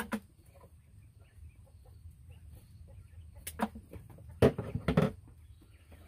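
A single scissors snip at the start, then a few short, sharp calls from live Coturnix quail, loudest a little past the middle.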